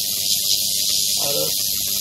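Hot-air rework blower hissing steadily as it heats a phone's charging connector to melt its solder for removal.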